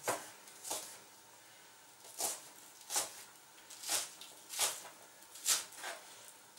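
Chef's knife slicing spring onions diagonally on a plastic cutting board: seven separate cuts, each a short knock of the blade through the stalks onto the board, unevenly spaced with a longer pause after the second.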